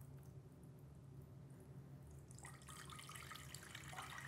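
Faint pouring of a thick green purée of blended pond water and dandelion greens from a glass blender jar into a metal pot. It grows louder about halfway through.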